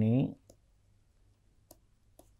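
A man's voice trailing off at the end of a word, then two faint clicks about a second apart from a stylus tapping on a pen tablet as he writes.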